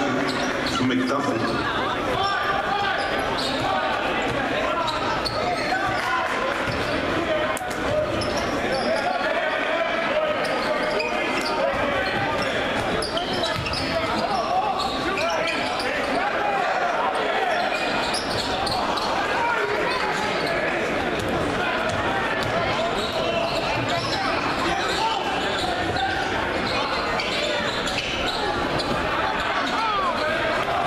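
A basketball game in a gymnasium: a ball bouncing on the hardwood court amid a steady mix of indistinct voices from players and spectators.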